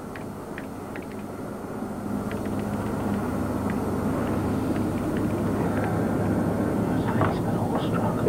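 Irregular keystroke clicks from typing on a BBC Micro keyboard, over a steady low rumble that grows louder from about two seconds in.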